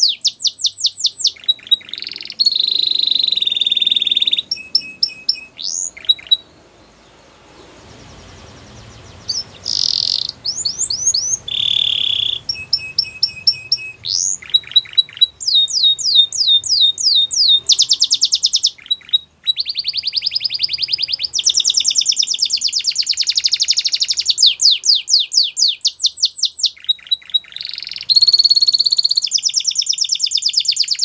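Domestic canary singing in long, loud phrases: fast trills of rapidly repeated sweeping notes alternating with held whistled notes. There is a break of a few seconds about a quarter of the way in, after which the song resumes and carries on almost without pause.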